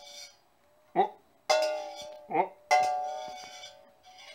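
A butter knife strikes a stainless steel saucepan twice, once about a second and a half in and again near three seconds. Each time the pan rings with a clear bell-like tone that fades over about a second, as the knife scoops at boiled dandelion greens in the pan.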